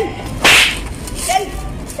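A single sharp, whip-like crack about half a second in: a blow being struck.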